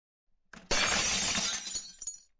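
Shattering glass sound effect: a sudden crash of breaking glass about three-quarters of a second in, which fades out over the next second and a half.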